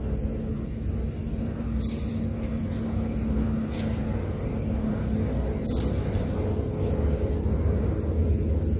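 Steady low background rumble with a faint hum, and two brief rustles of Bible pages being turned, about two and six seconds in.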